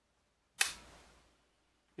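Luger P08 pistol dry-fired: a single sharp metallic click about half a second in as the trigger breaks and the striker falls.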